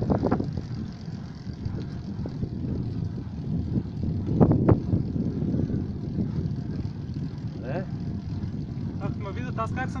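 Steady low rumble of a moving vehicle carrying the camera up the road. A brief louder knock comes about four and a half seconds in.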